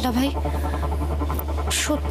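Dialogue over a background music score with a low steady drone, with a short breathy burst near the end.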